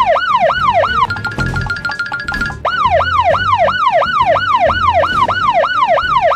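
Police car siren in a fast up-and-down yelp, about three sweeps a second. About a second in it switches for about a second and a half to a rapid high pulsing tone, then goes back to the yelp.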